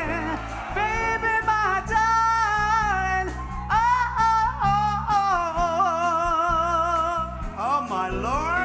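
Live band music with a singer's wordless high vocal line, long notes held with wide vibrato and several swooping upward slides between them.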